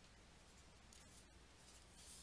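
Faint scratch of a stylus on a drawing tablet: two short writing strokes, one about a second in and one near the end, over a low steady room hum.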